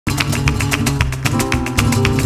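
Flamenco music for fandangos, starting abruptly: guitar over a fast, even rhythm of sharp percussive strikes, about eight a second.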